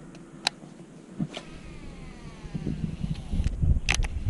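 A cast with a baitcasting reel: after a couple of clicks, the spool spins out with a thin whine that falls steadily in pitch as line pays off. A sharp click near the end as the reel is engaged, with rumbling handling noise.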